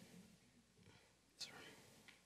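Near silence: room tone with two faint, breathy voice sounds, one at the start and one about a second and a half in.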